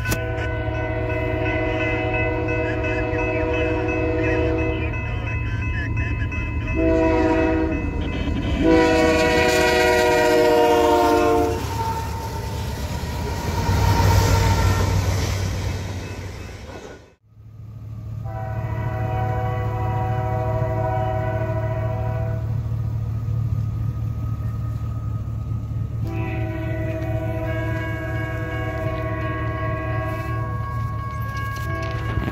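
Canadian Pacific locomotive's Nathan K3L three-chime air horn blowing for grade crossings: a long blast, a short one, then another long one, over the steady rumble of the passing train. The rumble swells as the train passes close, and the sound breaks off suddenly about seventeen seconds in. Two more long horn blasts follow.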